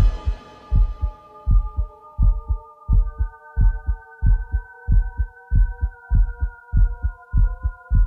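Heartbeat sound effect in a music intro: pairs of low thumps, each pair about two thirds of a second after the last and quickening slightly. Beneath them a held synth chord builds, one note entering at a time.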